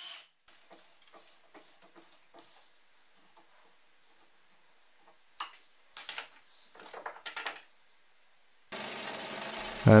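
Light clicks of tools being handled, then a few sharp clatters of tools on a workbench about five to seven and a half seconds in. Near the end a drill press motor starts and runs with a steady hum.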